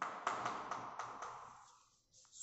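Chalk on a blackboard while writing by hand: a quick run of short taps and strokes in the first second and a half, dying away before the end.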